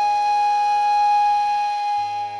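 Flute holding one long, steady note of the melody.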